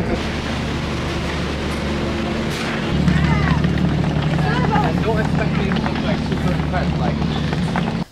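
Steady drone of a docked ferry's engine idling at the pier, which gets louder about three seconds in. Scattered voices of people around can be heard over it.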